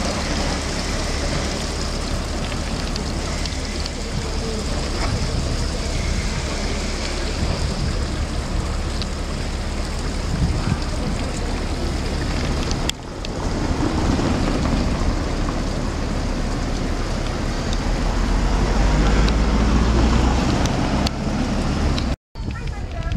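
Fountain water falling and splashing steadily onto stone and a drain grate, with wind rumbling on the microphone. The sound shifts at a cut about two-thirds of the way through, and the wind rumble swells near the end.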